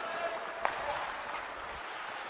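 Ice hockey rink sound: a steady hiss of noise with one sharp click, as of a stick on the puck, a little over half a second in.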